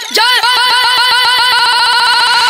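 Synthesizer line in a Bhojpuri devotional song's instrumental break, its pitch swooping down and up over and over, the swoops quickening from about three to about twelve a second.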